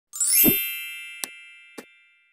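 Logo intro sound effect: a rising shimmer into a bright ringing chime with a low thump about half a second in, the chime decaying slowly. Two short clicks sound partway through, about half a second apart.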